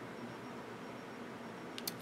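Quiet, steady room hiss in a pause between speech, with a couple of faint clicks just before the end.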